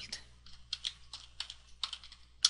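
Typing on a computer keyboard: about nine or ten separate key clicks at an uneven pace.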